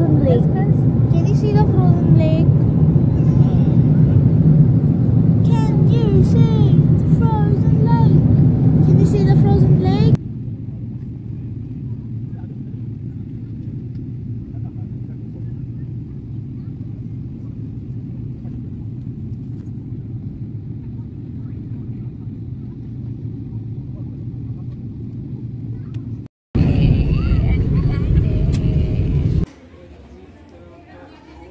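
Steady low drone of a jet airliner's cabin in flight, from the engines and the air rushing past. For the first ten seconds it is loud with voices over it, then it drops to a quieter, even rumble as the plane comes in to land, and loud voices return near the end.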